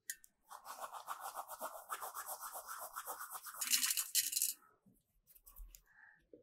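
Hands rubbing ajwain (carom) seeds between the palms over a plate of flour: a fast, rhythmic rubbing lasting about four seconds, followed by a few faint ticks.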